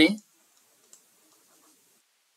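The tail of a spoken word right at the start, then near quiet with a few faint clicks of a stylus tapping on a tablet screen during handwriting, the clearest about a second in.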